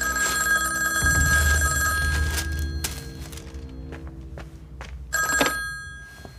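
Old-fashioned desk telephone ringing twice: a ring about two seconds long, then a second, shorter ring about five seconds in, cut short as the receiver is lifted.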